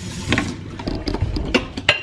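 A ceramic mug and its packaging being handled on a kitchen counter: a series of light clicks and knocks, the sharpest near the end.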